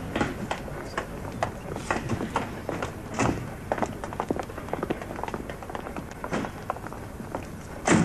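Irregular thuds, knocks and taps of passengers getting off a stopped train: footsteps and luggage on the platform, with the knocks of carriage doors.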